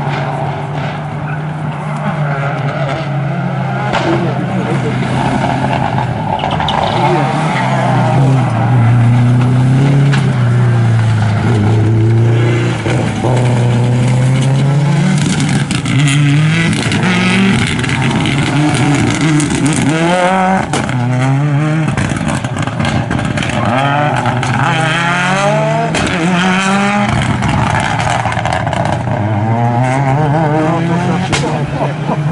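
Rally car engine revving hard through its gears, the pitch climbing and dropping again and again as it drives a twisty stage. In the second half come rapid up-and-down rev swoops as it brakes and turns through the bend, with tyre noise.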